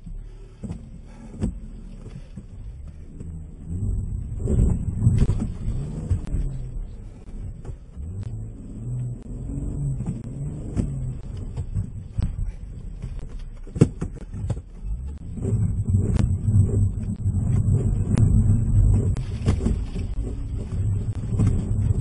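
Car engine revving up and down, heard from inside the cabin, as the car struggles for traction in snow, with a few sharp knocks; it grows louder over the last several seconds.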